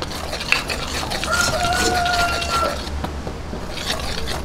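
Wire whisk stirring dry rice flour and baking powder in a stainless steel bowl: a steady scraping rustle with small clicks of the wires against the metal. A steady tone sounds for about a second and a half in the middle.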